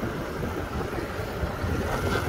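Honda Wave 110 (Thai-built) four-stroke single-cylinder motorbike engine running steadily while riding, with wind and road noise on the handlebar microphone.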